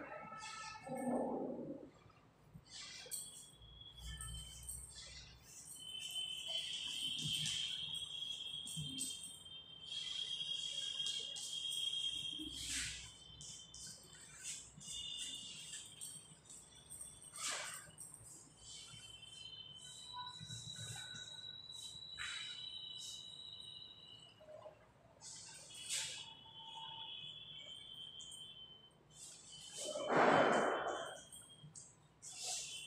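Chalk scratching and tapping on a blackboard in many short, quick strokes, with a thin, high, whistle-like tone that comes and goes.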